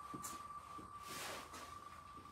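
Fast electronic ticking from an on-screen spinning prize wheel (wheelofnames.com), the ticks so rapid they merge into one steady high tone as the wheel spins at speed. A short hiss comes about a second in.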